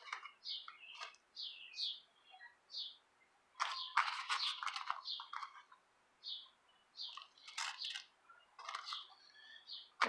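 A small bird chirping over and over in short, high, falling notes. Over it come bursts of dry crackling and rustling, loudest about four seconds in, as flaked pipe tobacco is crumbled by hand in a paper coffee filter.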